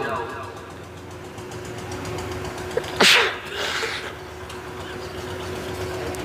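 A man's single short, sharp sob about halfway through, picked up close on a microphone, with a softer breathy sound just after. A steady low hum runs underneath.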